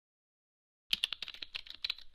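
Computer keyboard typing, a quick run of key clicks about eight to ten a second, starting about a second in.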